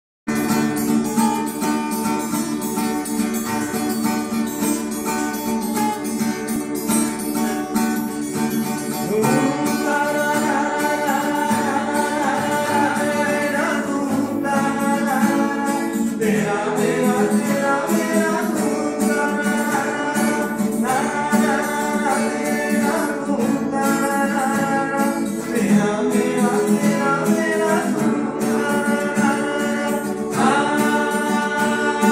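Acoustic guitar playing, with a voice coming in singing about nine seconds in and continuing in phrases over the guitar.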